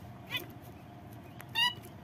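Zebra finch giving two short calls, a faint one about a third of a second in and a louder one near the end.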